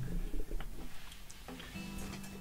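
Quiet handling of acoustic guitars: a faint click and strings ringing softly at low level, with a soft note starting near the end.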